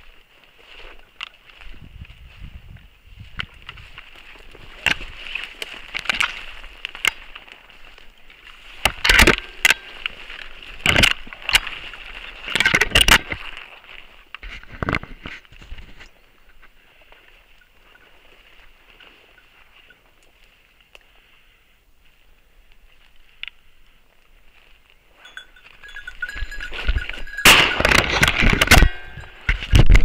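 A hunting dog's beeper collar sounds its point signal, a steady thin electronic tone, while the dogs hold a point. Over it come bursts of rustling, cracking and knocking as someone pushes through dry bracken and brush, loudest near the end.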